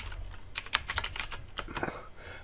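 Computer keyboard being typed on: a quick run of separate keystrokes as a command is entered.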